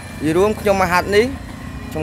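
A person's voice, with pitch glides through the phrase.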